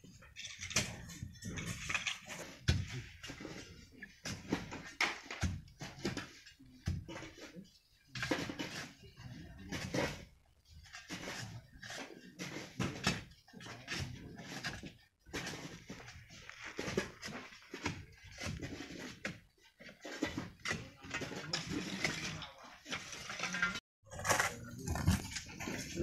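Irregular scraping and clattering of sand and gravel being prised loose from a quarry cliff face with long poles and falling down it.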